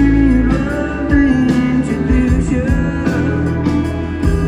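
Live country band music: a strummed acoustic guitar with the backing band, and a lead line sliding between held notes, no words sung.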